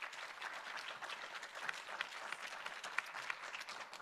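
Audience applauding: many hands clapping in a steady, fairly soft patter.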